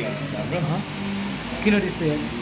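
A man's voice in a sing-song chant, holding drawn-out notes, with a low rumble underneath in the second half.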